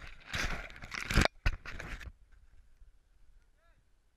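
Dry reed stems crackling and snapping close to the microphone as someone moves through them, a burst of rustling over the first two seconds with two sharp cracks near its end. A brief high squeak follows near the end.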